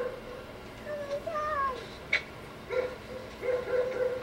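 Cat meowing: a drawn-out meow that bends down in pitch about a second in, then a few short, flat calls in the last second and a half. A single sharp click falls in between.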